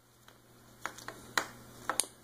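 A few faint, sharp clicks and light taps as a small plastic Bluetooth OBD2 adapter is handled in the fingers, spread over the second half.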